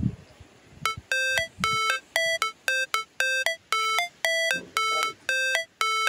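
An electronic beeper playing a short melody of about a dozen beeps at shifting pitches, roughly two a second. It sounds as the mains power cuts out.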